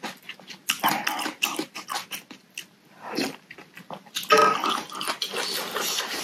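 Close-miked eating sounds: chewing and wet mouth clicks on a mouthful of hot vermicelli noodle soup. Just past four seconds comes a louder pitched, voice-like sound.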